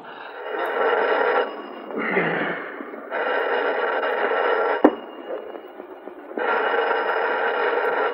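Old bedside telephone bell ringing three times, each ring about a second and a half long with pauses of about the same length between them.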